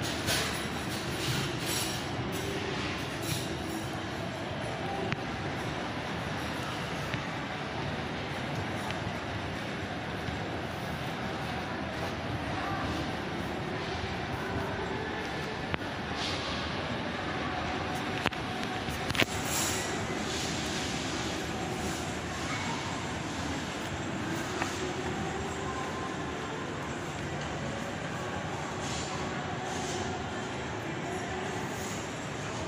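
Steady shopping-mall ambience: a broad hum of the hall with faint background music and distant voices, broken by a few sharp clicks a little past the middle.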